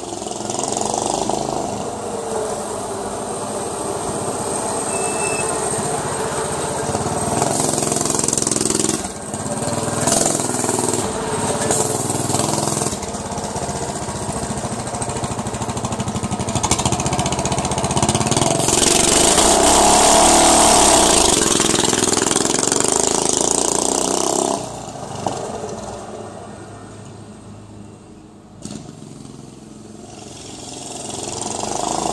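Mini bike's small engine running and revving as it rides around, its pitch rising and falling with the throttle and loudest as it passes close about two-thirds through. Near the end it drops off suddenly to a much quieter level.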